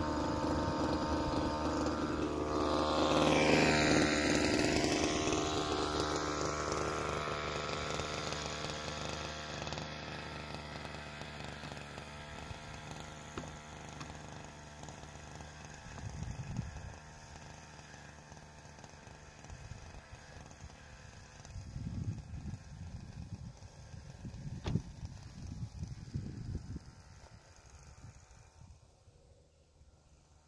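Small two-stroke engine of a Blade GP 767 backpack power sprayer running steadily. It is loudest a few seconds in, then fades as the sprayer moves away. A few short low rumbles come later on.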